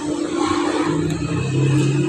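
Stream water rushing over rocks, a steady hiss, with a low steady engine hum that grows stronger about a second in.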